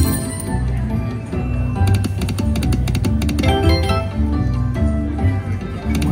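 Long Bao Bao slot machine playing its game music while the reels spin: a run of melodic notes over a repeating bass beat.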